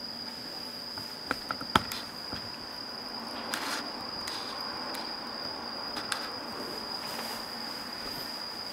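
Faint sizzle of a pizza cooking in a frying pan on a stove, under a steady high-pitched whine. A few light clicks come about one and a half seconds in.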